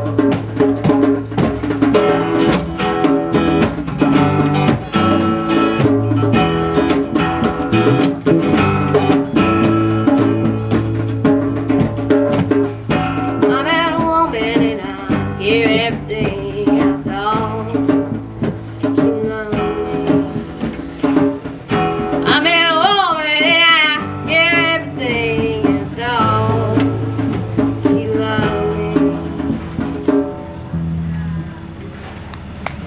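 Live acoustic folk-blues band playing: strummed acoustic guitar and drums, with a wavering lead melody line rising above them from about halfway in.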